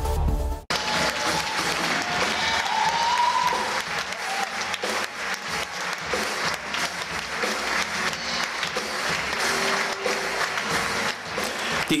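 A short stretch of jingle music cuts off abruptly within the first second. Then a hall audience applauds and cheers steadily, with one rising voice briefly heard above the clapping about three seconds in.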